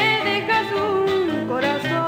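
A remastered Chilean Nueva Ola pop song recording playing: a held, wavering melody over full backing, with the melody sliding down in pitch about a second and a half in.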